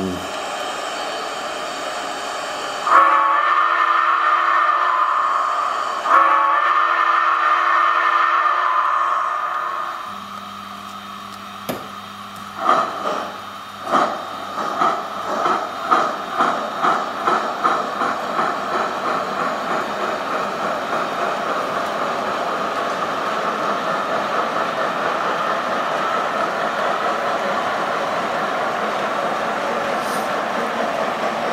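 The sound system of an O-scale Santa Fe 2-10-4 steam locomotive model: a steady steam hiss, then two long whistle blasts, the signal for pulling out. About ten seconds in, slow exhaust chuffs start and quicken into a fast, even beat as the engine gets its freight train moving.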